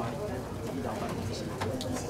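Indistinct murmur of several people talking at once, no single voice clear.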